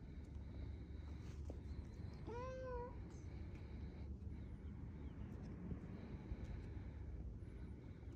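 A domestic cat gives a single short meow about two and a half seconds in, over a low steady background rumble.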